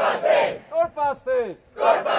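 A large crowd chanting a rallying cry in unison, shouted in rhythm. A loud shout is followed by three short calls that fall in pitch, and the pattern starts again near the end.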